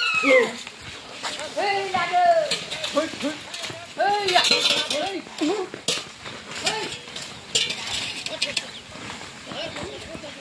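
People shouting in short, repeated calls that rise and fall in pitch, with a few sharp clicks between about six and eight seconds in.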